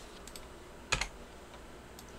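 A sharp computer keystroke click about a second in, with a couple of faint key ticks before it.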